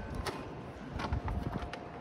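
Light rustling and a few small taps as paper and plastic bags of garden amendment are handled over a wheelbarrow of soil, with a faint thin steady tone in the second half.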